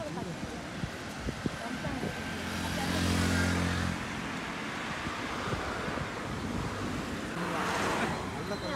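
Highway traffic passing: a vehicle's engine and tyres swell up and fade about two to four seconds in, and a second vehicle rushes past near the end.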